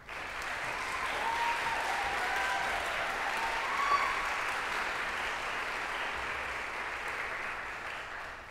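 Audience applauding, starting suddenly and holding steady, then beginning to fade near the end.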